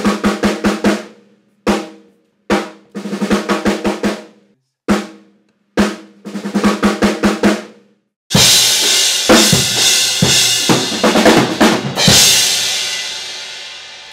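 Acoustic drum kit in a sound check, setting levels so nothing clips: for about eight seconds a snare drum is struck alone in a repeating pattern of single hits and quick runs of about six strokes. Then the full kit plays with cymbals for about four seconds, and a cymbal rings out and fades near the end.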